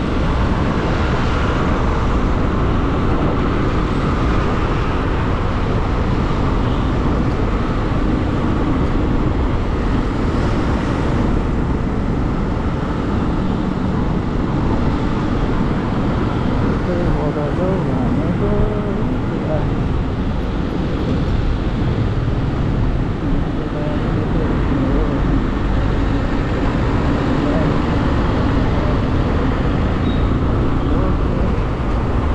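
Motorbike riding in city traffic: a steady rush of wind and road noise with the engine running underneath.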